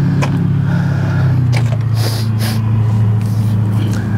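A vehicle engine idling nearby: a steady low hum that settles slightly lower in pitch about a second in. A few short clicks and a brief hiss come near the middle.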